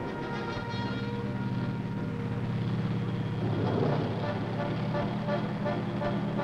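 Tanks driving over rough ground, their engines and tracks running steadily, with a film music score mixed over them.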